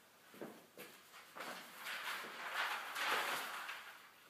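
Handling noises at an iron hand printing press as a print is being set up: a few light knocks, then about two and a half seconds of rustling, scraping noise, loudest about three seconds in.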